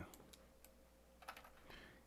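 Near silence: faint room hum with a few scattered faint clicks of a computer being operated.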